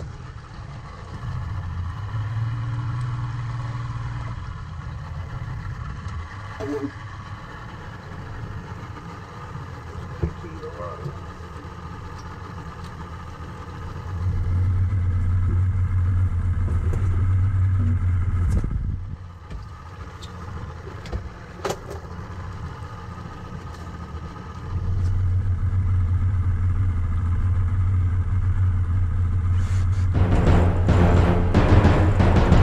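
A steady low rumble that grows louder twice for several seconds, with a few short sharp knocks in the middle.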